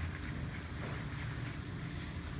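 Steady low room rumble, with faint chewing and wrapper sounds from a man eating a sandwich.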